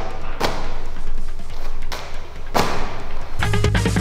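A medicine ball (wall ball) thuds against the wall target twice, about two seconds apart, over background music. A deep, heavy bass beat comes in near the end.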